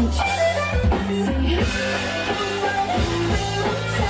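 Live rock band playing an instrumental passage: electric guitar over a drum kit.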